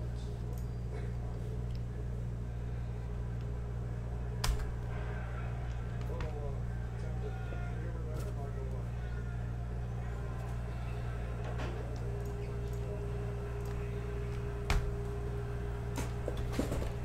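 A steady low hum under the whole stretch, with two sharp clicks, one about four seconds in and one near the end, and a faint steady tone coming in after about twelve seconds.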